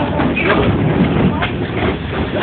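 Rubber balloons rubbing and bumping together right against the microphone, with voices of people in the room.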